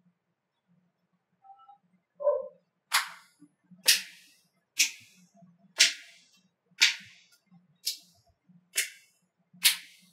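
Slow hand clapping in a small room, one clap about every second and starting to speed up near the end, after a short lower-pitched sound about two seconds in.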